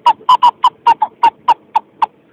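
An ocarina played as a quick run of about ten short, sharply tongued notes close to one pitch, about five a second.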